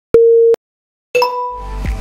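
Workout interval-timer beeps marking the end of an exercise interval: a short steady beep, about half a second of silence, then another beep as background music with a beat comes back in.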